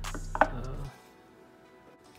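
Handling of the razor's packaging: a sharp knock with a brief ring about half a second in, as the box's lid comes off. After that only faint room tone.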